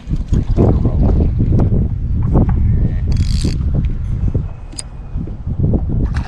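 Wind buffeting the microphone on a boat as a steady, loud low rumble, with scattered small knocks and a brief hiss about three seconds in.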